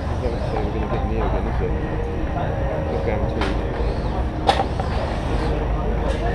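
Busy rally service bay: a steady low hum under indistinct chatter, with a sharp knock about four and a half seconds in as mechanics work on the car.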